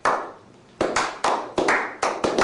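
A slow clap by a small group of people: one echoing clap, a pause, then about a second in the claps come closer together, roughly five a second.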